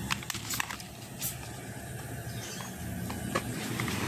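Several light clicks and knocks as a plastic desk fan and its plug are handled and connected, over a steady low hum.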